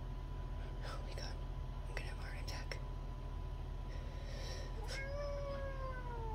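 House cat growling at a raccoon through a glass door: a few short breathy hisses, then, near the end, a long low yowl that slides slowly down in pitch.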